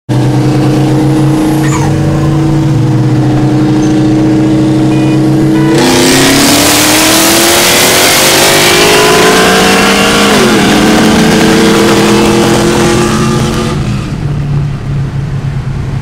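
Car engine heard from inside the cabin, running steadily, then put to full throttle about six seconds in: a loud rush starts and the revs climb, drop at an upshift about ten and a half seconds in, and climb again before the throttle is lifted near the end.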